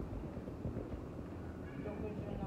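Muffled rustling and irregular low bumps from a phone camera's microphone covered by clothing or a hand while it is carried.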